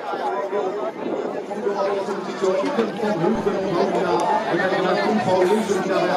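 Babble of many people talking at once, getting a little louder about two and a half seconds in.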